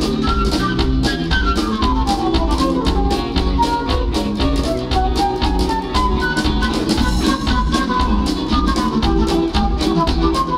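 Live band playing an instrumental passage: a flute carries the melody in quick falling and rising runs over electric guitar, electric bass and a drum kit keeping a steady beat.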